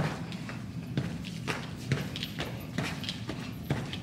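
Irregular thumps and shuffles, two or three a second, from a person moving through an exercise on a wooden gym floor.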